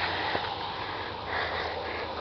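Steady background hum and hiss, with faint soft breath noises close to the microphone.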